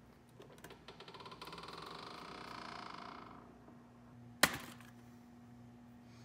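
Lid of a stainless-steel step trash can closing: rapid ticking for about three seconds as it lowers, then a single sharp clack as it shuts.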